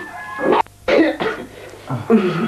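A man making a few short non-speech vocal sounds from the throat, one about half a second in and another about a second in.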